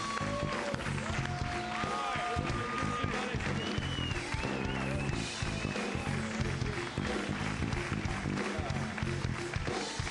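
Television studio house band playing an upbeat walk-on number with a steady beat and long held melody notes.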